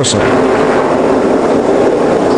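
A NASCAR stock car's V8 engine running loudly and steadily while the car fails to pull away. Smoke pours from around the rear wheel, and the car has no traction: the commentators think it could be a broken axle or differential.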